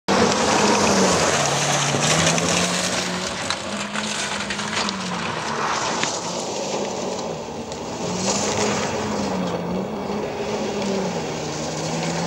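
Citroën DS3's engine revving up and down repeatedly as the car slides in circles on loose gravel, over a steady hiss of tyres spraying gravel.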